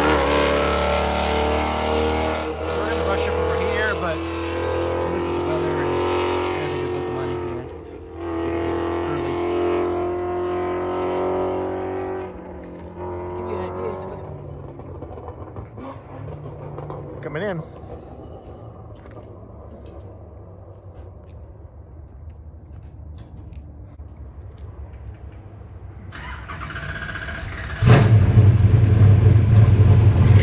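Car engine on track at a distance, running hard, its pitch climbing and falling through shifts and braking for about twelve seconds before fading. Near the end a loud, low V8 rumble starts suddenly close by.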